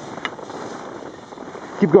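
Steady rushing noise of skiing downhill: wind over the microphone mixed with skis sliding on snow, with a faint click a quarter second in.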